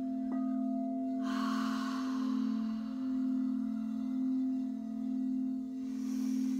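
Frosted quartz crystal singing bowls, tuned to C and A, sounding a steady low tone that pulses slowly as the tones beat against each other. A soft mallet strike on a bowl comes just after the start and adds a higher ringing tone. A soft airy hiss rises about a second in and fades over the next two seconds.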